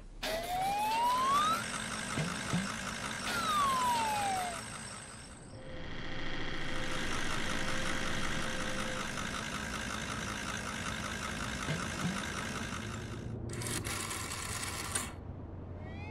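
Cartoon sound effects: a whistling tone glides up and then back down. Then a small cartoon van's engine runs steadily and rhythmically for several seconds. A short hiss comes near the end.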